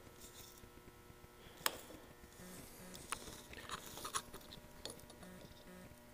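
Faint clicks and taps of steel dial calipers being set into a harrow hub's seal bore to re-check the outside-diameter reading, with one sharper click a little under two seconds in and a cluster of small clicks in the middle. A faint steady hum sits underneath.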